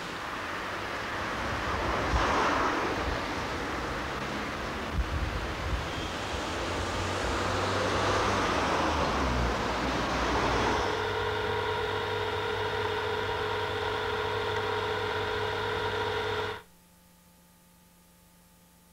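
Street traffic: a steady rush of passing cars that swells and fades twice, then a steady droning hum with several pitches joins in about eleven seconds in. Everything cuts off suddenly near the end.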